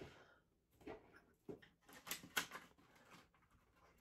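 Faint rustling with a few light clicks and knocks, from packaging and objects being handled while searching for another item.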